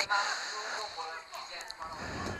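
Open-air football ground ambience: faint, distant voices of players and spectators over a steady background hiss.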